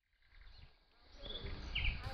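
Outdoor ambience fading in from silence: steady low background noise rising over the second half, with a few short, high bird chirps.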